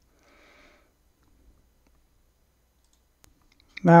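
Near silence with a faint breath just after the start, then a couple of faint computer mouse clicks, the clearest a single sharp click about three seconds in.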